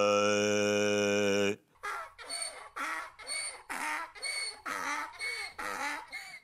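A man's voice attempting to sing, judged beforehand as hopelessly off-key. He holds one loud 'aaa' note for about two seconds, then breaks into about eight short bursts, each under half a second.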